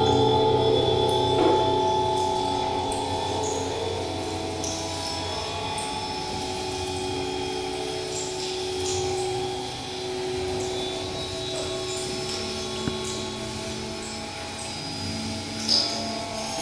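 Live electroacoustic drone music: many sustained tones layered together, easing slightly in level over the first few seconds, with scattered short high chirps and clicks over them. There is a brief click about 13 seconds in and a sharper, louder high ping just before the end.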